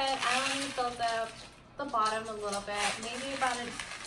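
A woman talking in short phrases, with a brief pause a little before the halfway point.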